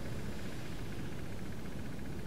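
Steady, even background hiss of a small room with no distinct sound events: room tone.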